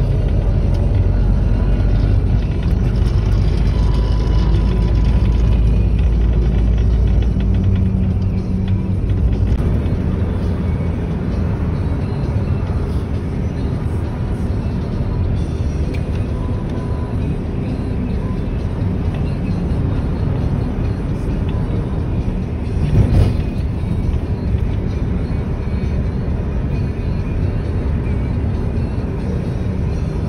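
Road and engine rumble heard from inside a moving car, with music playing along with it. The rumble is heaviest in the first several seconds, and a brief louder bump comes about two-thirds of the way through.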